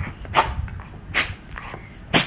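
A small curly-coated dog making a few short, breathy noises up close as it licks and nuzzles a person's face.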